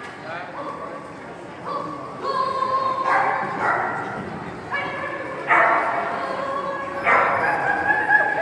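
A dog yipping and whining excitedly in a string of high, drawn-out cries that grow louder from about two seconds in.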